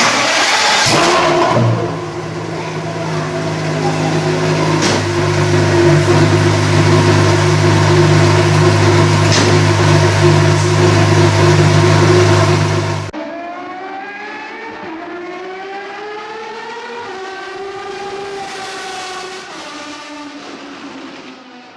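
Pagani Zonda F's AMG V12 starting with a loud burst, then settling into a steady, loud idle. About two-thirds of the way through it cuts off suddenly, and quieter tones that slowly rise and fall in pitch follow.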